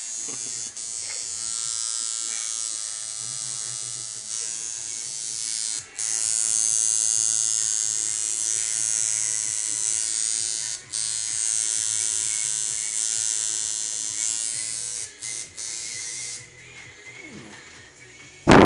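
Electric tattoo machine buzzing steadily as it works ink into the skin, with brief stops about six and eleven seconds in and two quick breaks near the end, then cutting off shortly before the end.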